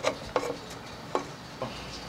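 Four light, sharp clicks and knocks spread across two seconds, with no speech.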